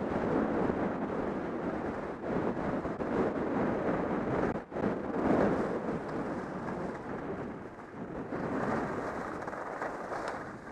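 Wind rushing over the microphone of a camera carried by a skier going downhill, mixed with the hiss of skis on packed snow. The noise surges and eases throughout, with a brief drop-out a little under five seconds in.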